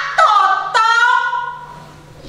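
A woman declaiming Javanese poetry (geguritan) in a drawn-out, sing-song voice: short phrases, the last stretched on a long held vowel that fades away.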